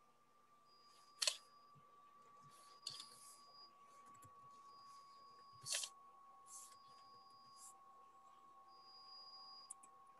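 Near silence: faint room tone with a thin steady high hum and a few short clicks and ticks. The sharpest clicks come about a second in and just before six seconds.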